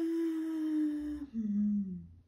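A woman humming a thoughtful two-note "hmm" with her mouth closed while reading. The first note is held for about a second; the second is lower and falls away.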